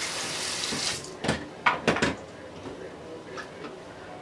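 Bathroom sink tap running briefly for about the first second, then a few sharp knocks.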